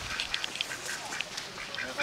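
Ducks quacking: many short quacks in quick succession.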